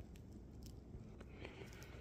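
Near silence, with a few faint clicks and a soft rustle from a work-gloved hand handling chunks of ore.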